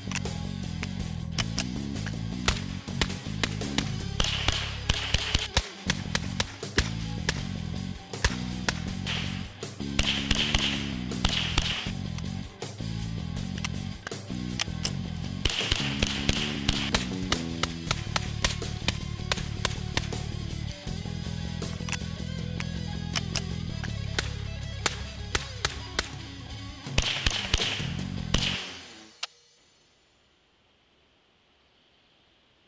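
Background music over many sharp cracks in quick, irregular strings: rapid semi-automatic fire from a .22 LR Ruger 10/22 rifle. The music fades out about a second before the end.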